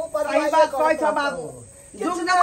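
Speech: a voice talking, ending in a drawn-out falling tone about a second and a half in, followed by a brief lull near the end.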